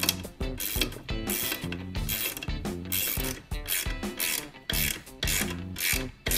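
Ratchet wrench clicking in short strokes as it tightens nylock nuts on the bolts of a steel table leg, over background music with a beat.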